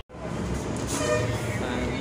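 Steady background noise, a low rumble with hiss, with faint voices under it. It starts just after a brief gap of silence at the very beginning.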